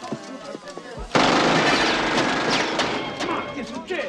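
A sudden loud burst of rapid gunfire about a second in, dense shots lasting about two seconds and then fading out.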